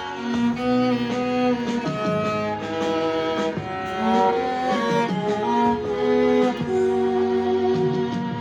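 Violin bowed in a slow melody of long held notes.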